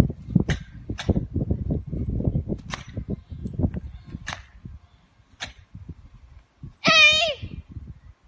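A karate kata performed at full power: five sharp snaps of fast strikes and kicks over a low rumble of wind on the microphone, then, about seven seconds in, a short, loud kiai shout that drops in pitch at its end.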